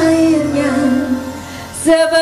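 A woman singing a dangdut song into a microphone over instrumental accompaniment. She holds one long note that sinks a little and fades, then begins a new phrase near the end.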